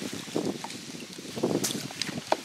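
Light handling noise from a just-landed bass being taken out of a landing net: a few soft rustles and scattered short clicks, with one sharper click near the end.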